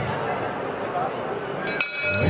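Boxing ring bell rung near the end, its steady metallic tones ringing on: the signal that starts the third round. Before it there is a general arena murmur of voices.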